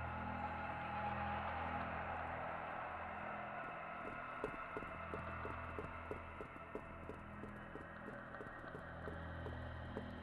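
Tense dramatic background music: a low, slowly pulsing bass drone under a sustained pad, with a light regular ticking joining about halfway through.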